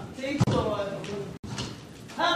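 A single sharp thump about half a second in, followed by brief indistinct voices in a hall; the sound cuts out for an instant a little past the middle.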